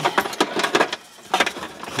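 Several sharp plastic clicks and knocks from a car's lowered glove box and its wiring being handled, a cluster in the first second and another about a second and a half in.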